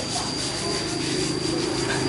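Hand sanding of carved mun hoa (streaked ebony) wood with a sanding block: a steady rubbing scrape.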